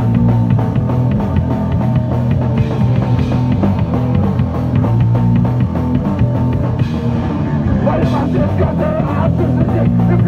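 Punk rock band playing live, with drums and guitar, at a loud, steady level.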